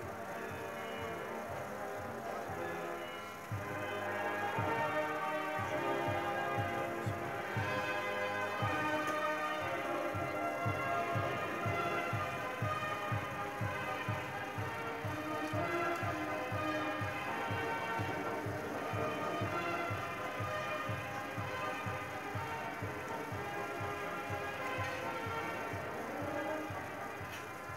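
Music with sustained notes over a steady, regular beat; it gets louder about three and a half seconds in, when the beat comes in.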